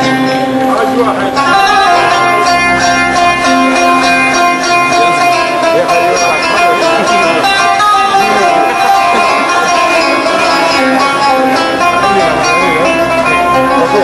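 Live Arabic ensemble music: plucked qanun and oud with violins and hand drum, playing continuously. A woman's voice sings over it.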